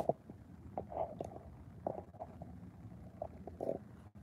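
Handling noise from a phone camera being set up: a sharp knock at the very start, then scattered faint taps and rubs against the phone.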